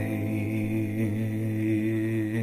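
A singer humming one long, low, steady note over an acoustic guitar chord that is left to ring out.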